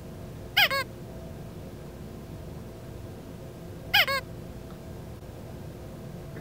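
A high squeaky chirp, heard twice about three seconds apart, each time a quick double with falling pitch.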